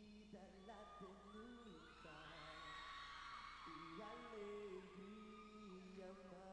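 A male vocal group singing a cappella in close harmony, with long held chords that change every second or so. High screams from the audience swell over the middle.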